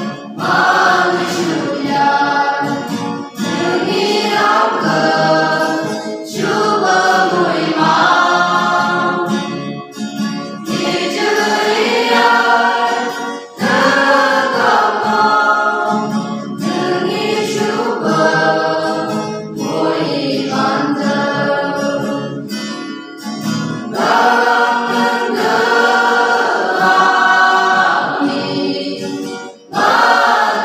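Mixed choir singing a hymn in the Phom language, accompanied by strummed acoustic guitars. The singing comes in held phrases of a few seconds each, with brief breaks for breath between them.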